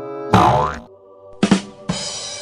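Cartoon comedy sound effects over background music: a loud boing with a drum hit about a third of a second in, then two quick downward sweeps in the second half.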